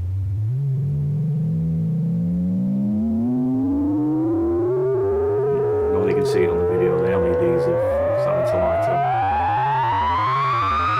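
Self-oscillating MS-20-style voltage-controlled filter on a DIY analogue modular synth: its whistle-like tone glides steadily upward in pitch as the cutoff is turned up. Under it runs a low, regularly wobbling synth tone, with a few faint clicks in the second half.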